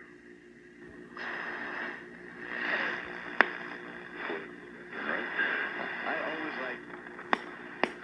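1959 Bulova Model 120 tube AM clock radio playing a faint, hissy broadcast voice through its small speaker, with a sharp static click about three and a half seconds in and two more near the end.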